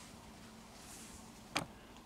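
Faint soft swishes of a cloth wiped across a plastic turntable dust cover, over a low steady hum. A single sharp click sounds about one and a half seconds in.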